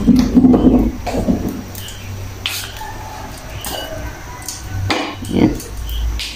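Kitchen sounds at a gas stove. A few light clicks and knocks come as the burner flame is turned down, over a steady low rumble. A short burst of voice comes right at the start.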